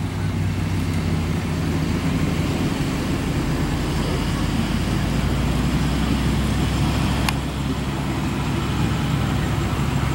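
A steady low motor drone, as from an idling engine, runs throughout, with one short sharp click about seven seconds in.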